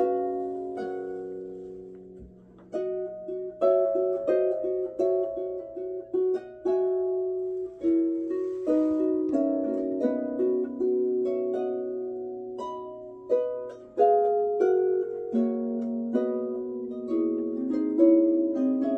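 Over-100-year-old pedal harp played solo: single plucked notes and chords that ring on and overlap. The sound fades briefly about two seconds in as the notes die away, then the playing resumes at a steady, unhurried pace.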